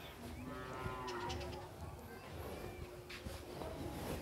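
Two faint, drawn-out calls from a distant animal, one early on and one just past the middle, over low room noise.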